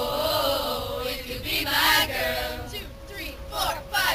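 A group of young women's voices chanting a song together in unison, breaking into short clipped syllables toward the end.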